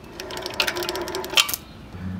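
Moped roller drive chain rattling and clicking over the sprocket as the pedal crank is turned to feed the freed chain off, a rapid clatter of about a second and a half ending in a sharper clink.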